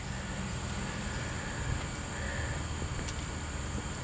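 Light scratching of a plastic scratcher tool on a scratch-off lottery ticket, with a steady high-pitched insect drone in the background and a faint click about three seconds in.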